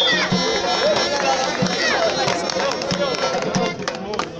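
An accordion and a drum play lively folk music with a steady beat, under crowd voices and shouts. Near the end the music drops away and clapping starts.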